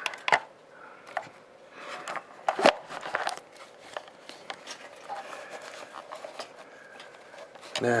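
Handling noise on a workbench: a scattering of sharp clicks and knocks as objects and an ESR meter are moved into place by hand, the loudest knock about two and a half seconds in.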